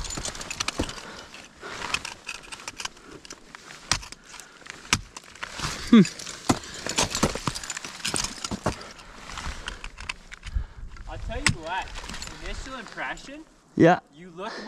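Ice tools and crampons striking steep waterfall ice in an irregular run of sharp knocks and scrapes as a climber swings and kicks up the pitch, with short vocal sounds in between.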